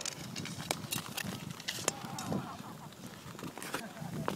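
Ice skate blades on rough, scratched natural lake ice: irregular sharp clicks and hissing scrapes of skating strokes over a low rumble.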